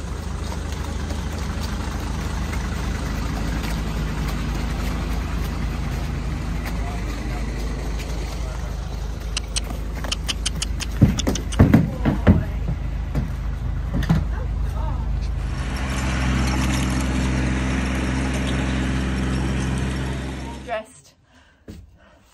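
A horse's hooves knocking on a wooden horsebox ramp as it is loaded into the lorry: a handful of loud thuds about eleven to twelve seconds in. Under them a vehicle engine idles with a steady low hum, which grows louder near the end and then cuts off suddenly.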